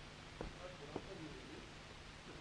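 Faint, distant voice of an audience member speaking off-microphone, with two soft taps near the start.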